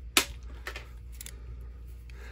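Small metallic clicks from an antique Bulldog revolver's ejector rod and loading gate being worked by hand: one sharp click just after the start, then a few fainter clicks around a second in.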